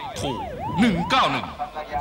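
Police car siren wailing rapidly up and down, about two rises and falls a second, dying away a little past a second in.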